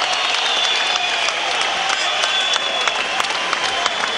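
Boxing arena crowd applauding steadily, many hands clapping together.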